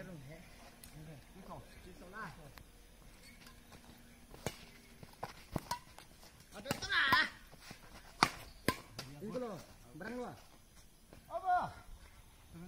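Badminton rackets striking a shuttlecock during a rally: four sharp hits in the second half, mixed with the players' shouts, the loudest being a long shout a little past the middle.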